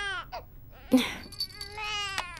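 Infant crying in long, high wails. One wail tails off just after the start, and after a short pause a second wail begins.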